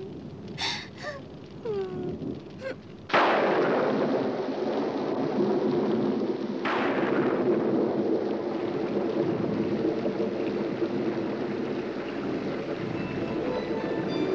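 A sudden crack of thunder about three seconds in, giving way to steady heavy rain, with a second thunderclap about three and a half seconds later. A few short, faint voice sounds come before the first thunderclap.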